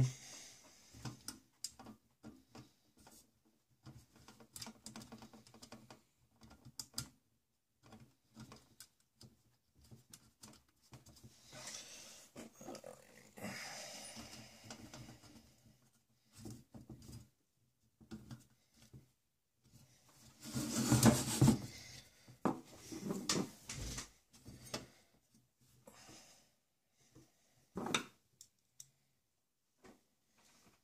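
Screws being driven into a metal hard-drive cage with a hand screwdriver: scattered small clicks and scrapes of metal on metal, with a louder clatter of the cage being handled about two-thirds of the way through.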